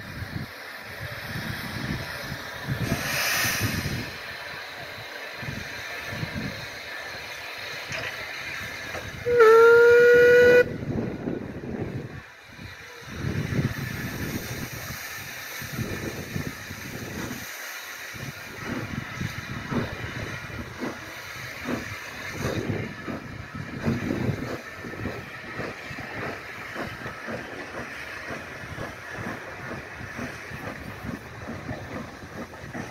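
Austerity 0-6-0 saddle-tank steam locomotive 68067 pulling away with a train, its exhaust beats sounding unevenly throughout. About nine seconds in it gives one loud whistle blast lasting about a second and a half.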